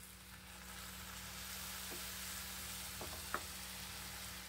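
Soft sizzling as cooled boiled milk hits the hot, ghee-cooked banana and semolina mixture in a non-stick pan, with a few faint taps of a wooden spatula.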